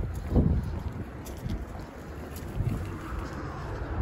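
Wind buffeting the phone's microphone in uneven gusts, the loudest near the start, over a low hum of road traffic.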